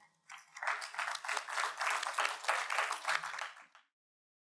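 Audience applause, dense clapping from many hands, starting just after the talk's closing thanks and stopping abruptly near the end.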